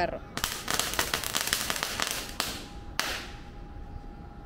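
A traqui-traqui, a string of small firecrackers, going off on the street: a rapid run of sharp pops for about two seconds, then two louder single bangs over the next half second or so.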